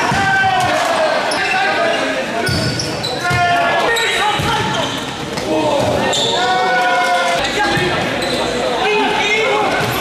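Futsal match heard from the sidelines: players and spectators shouting and calling, echoing around a sports hall, with thuds of the ball being kicked and bouncing on the hard indoor court.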